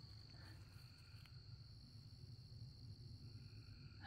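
Faint evening chorus of night insects: a steady high-pitched trill, with a second, higher insect tone joining for a couple of seconds in the middle. A few faint, brief squeaky calls from ducks in a stream come in during the first second or so.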